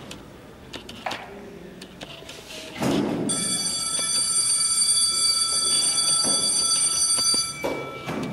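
An electric school bell rings one steady, high-pitched ring for about four seconds, starting about three seconds in and cutting off near the end. It signals the end of the class period.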